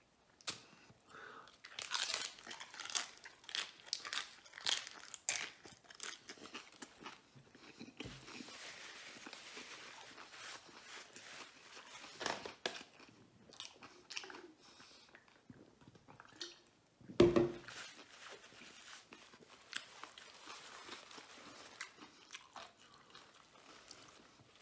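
A Jack in the Box fried hard-shell taco being speed-eaten: rapid, loud crunching bites through the shell for the first several seconds, then quieter steady chewing. One short loud burst about seventeen seconds in.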